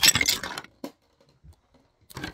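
A sudden clatter and clinking of hard objects being knocked over. It dies away within about a second, leaving a couple of faint knocks.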